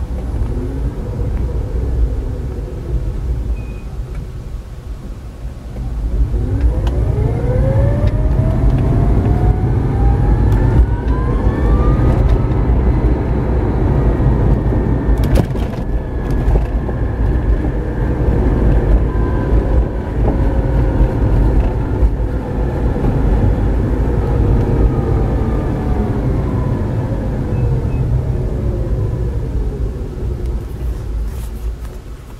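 Road and tyre rumble inside the cabin of a Mazda RX-8 converted to a Nissan Leaf electric motor. The electric drive's whine rises in pitch as the car picks up speed over the first dozen seconds, holds fairly steady, then falls away near the end as the car slows under mild regenerative braking.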